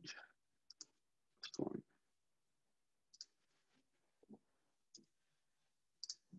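Sparse computer keyboard and mouse clicks, a second or so apart, over near silence. About one and a half seconds in there is a brief, louder vocal sound.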